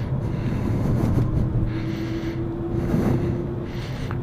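Inside the cabin of a Dodge Challenger R/T (5.7 L HEMI V8) under way: steady low engine and road rumble. A thin steady hum sounds over it from about a second in until shortly before the end.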